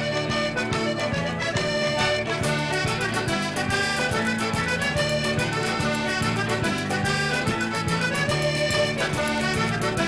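Button accordion playing a lively instrumental dance tune, with a band behind it keeping a steady beat.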